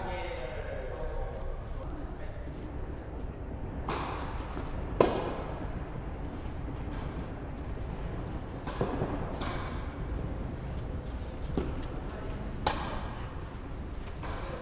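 Tennis balls struck by rackets and bouncing on an indoor court during a doubles rally: a string of sharp pops at irregular intervals, the loudest about five seconds in, with hall echo.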